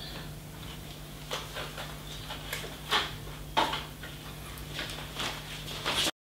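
Scattered clicks and light knocks, about six in all, from a monopod being handled and fitted on a tripod head, over a steady low hum.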